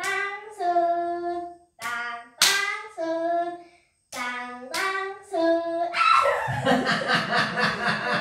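Hand-clapping game: sharp palm-to-palm claps, each followed by a short sung chant of a few held notes from a child and a woman. Near the end the chant gives way to a jumble of overlapping voices.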